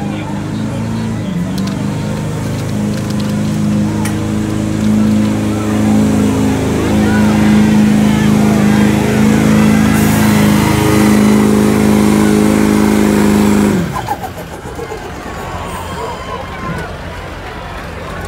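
Chevrolet Silverado 2500 HD pickup's Duramax diesel V8 under full load, pulling a weight-transfer sled. The engine holds a steady pitch and grows louder, then drops off abruptly about fourteen seconds in as the pull ends.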